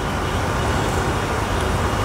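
Steady background noise in a dining hall: a constant, even rushing hum with no distinct events.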